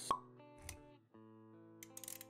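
Intro jingle of held synthetic notes with motion-graphics sound effects: a sharp pop just after the start, the loudest sound, then a softer low thud about two-thirds of a second in. The music drops out briefly near one second, then held notes resume.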